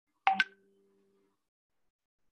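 Two quick sharp clicks about a sixth of a second apart, followed by a faint low hum that fades out about a second in.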